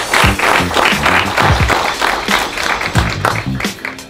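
An audience applauding while upbeat music with a bass line and a steady beat plays over it; the clapping thins out toward the end and the music is left on its own.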